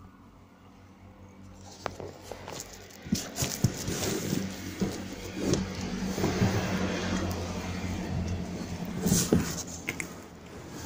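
A large cardboard bed box being wrestled out of a skip: cardboard scraping and rustling with scattered knocks, starting about three seconds in and getting louder until it drops off near the end.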